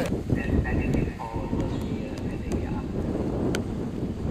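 Wind rumbling on the microphone, with a faint high tone or two in the first half and a couple of sharp clicks near the end.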